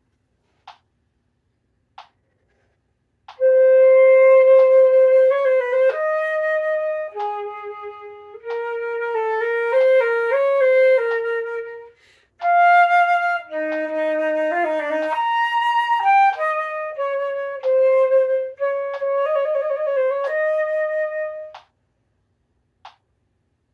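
Solo silver concert flute playing a slow etude passage with quick grace notes and a short trill near the end. It starts about three seconds in, breaks off briefly about midway, and stops just before the end.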